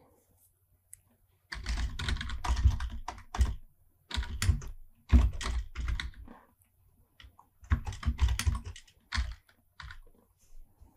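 Typing on a computer keyboard: three quick bursts of keystrokes with short pauses between them.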